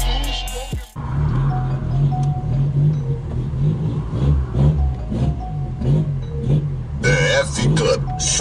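Bass-heavy rap music played loud through a car sound system with four subwoofers, a deep bass line pulsing about twice a second, with rapped vocals coming in near the end. About a second in, a different music track cuts off abruptly.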